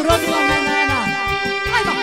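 Live folk band music with violin and saxophone over a steady bass beat, as a singer finishes a phrase in Romanian ("nostru") at the very start and the instruments carry on.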